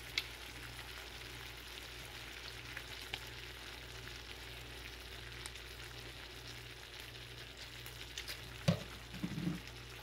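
Shrimp frying in olive oil and lemon juice in a nonstick skillet: a steady sizzling hiss with faint scattered pops. There is one sharp click near the end.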